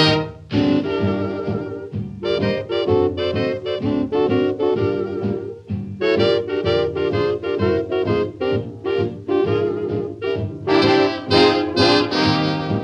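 A 1930s swing dance band playing an instrumental passage, with brass and saxophones over a steady dance beat.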